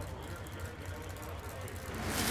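Super Stock drag car engines idling at the starting line, a steady low rumble, with faint voices over it.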